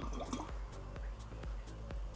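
Faint dripping and trickling of water as an airline-tube siphon starts draining an aquarium jar, under quiet background music.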